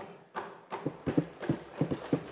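Rapid, fairly even knocking of hands thumping on wooden desks, about five knocks a second, starting about half a second in: members of the chamber banging their desks in approval.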